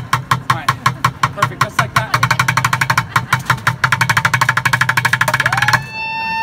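Bucket drumming: drumsticks striking upturned plastic buckets and a cymbal in a loud, fast run of strokes that speeds up to a very rapid roll about two seconds in and breaks off just before the end.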